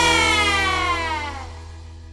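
The closing note of a 1960s beat-pop song rings out, its pitch gliding down while it fades away, over a low steady hum.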